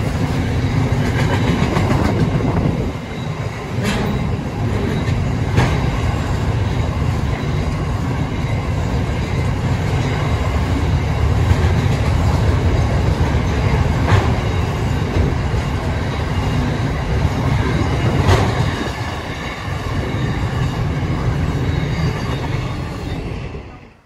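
Intermodal freight train wagons rolling past close by: a steady, loud rumble of wheels on rail, with a few sharp clacks scattered through it. The sound cuts off suddenly just before the end.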